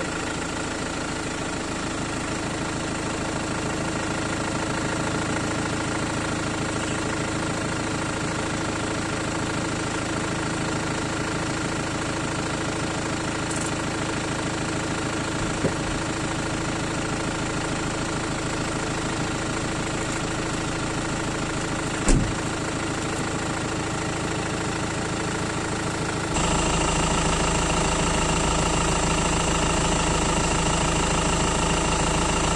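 Mini Cooper SD's four-cylinder turbodiesel idling steadily, with a sharp click about 22 seconds in. Near the end the sound cuts to a louder, steadier take of the same engine.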